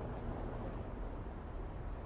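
Steady low outdoor background rumble with no distinct footsteps or knocks.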